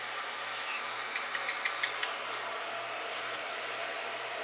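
Steady room hum and hiss, with a quick run of five or six faint light clicks between about one and two seconds in.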